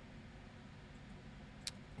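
Quiet room tone with a low steady hum, and a single computer mouse click near the end.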